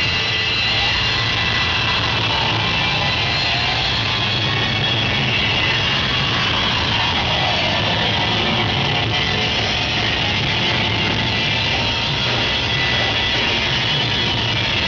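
Symphonic metal band playing live with electric guitars and drums, recorded from within the crowd as a loud, dense, steady wash of sound.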